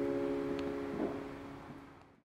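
The last chord of an acoustic guitar ringing out and slowly fading, with a faint thump about a second in.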